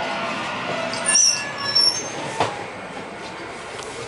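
Steady hum inside a railway passenger coach. About a second in there are two short high-pitched squeals, and a sharp click comes a moment later.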